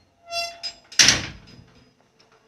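A door squeaking briefly on its hinge, then shut about a second in with a loud bang that rings out for a moment.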